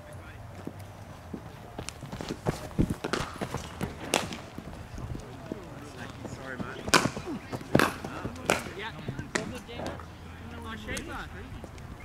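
Cricket net session: several sharp knocks of leather cricket balls striking bats and netting, the loudest about seven and eight seconds in, over murmured background voices.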